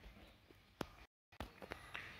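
Near silence: faint room tone with a few small clicks.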